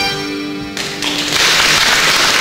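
Button accordion and lap steel guitar hold the final chord of a waltz, which cuts off under a second in. Audience applause then swells up and becomes the loudest sound.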